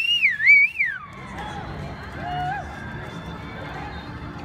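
A loud, shrill human whistle from the crowd: it rises, wavers and falls away over about a second. Faint crowd noise follows.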